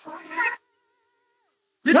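A woman's voice in high, wavering exclamations that breaks off about half a second in, then a second or so of dead silence before her voice comes back loudly near the end.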